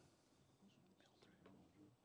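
Near silence: a faint, distant murmur of voices in the assembly hall, with a few small ticks.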